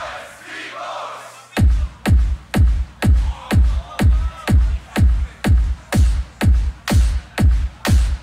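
Loop-station beatbox routine played back from a live battle. After a short lull with crowd noise, a looped beatboxed kick comes in about a second and a half in. It repeats steadily a little over twice a second, with sharper hits layered on top.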